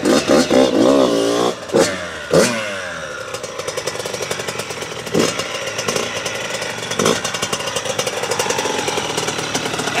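Yamaha YZ85 single-cylinder two-stroke dirt bike engine revving in the first two seconds, its pitch falling away, then running steadily at low revs with short throttle blips about five and seven seconds in.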